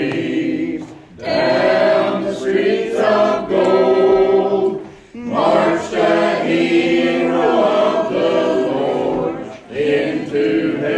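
A church congregation singing a hymn together in long held notes, with brief breaks about a second and five seconds in.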